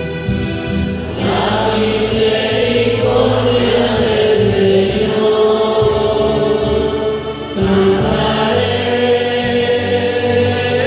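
A sung psalm: a male cantor at the microphone sings a slow melody in long held phrases, over sustained accompanying chords that change every few seconds.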